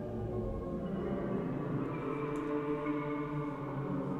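Arturia Pigments software synth sounding a sustained, slowly shifting pad of several held tones from its granular sample engine, with pitch randomization applied to the grains.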